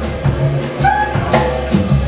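Live jazz band playing: drum kit and a steady bass line, with a tenor saxophone playing short melody notes over them.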